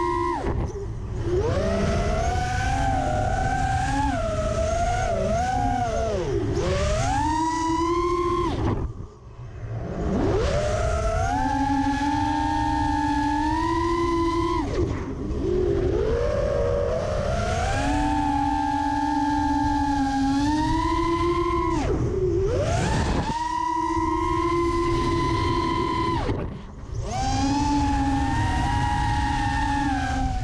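Vortex 250 racing quadcopter's brushless motors and Dalprop Cyclone T5045C props whining, the pitch climbing and sagging with the throttle over a steady rush of wind. The whine cuts almost to nothing twice, about nine seconds in and again near twenty-six seconds, as the throttle is chopped, then spools back up.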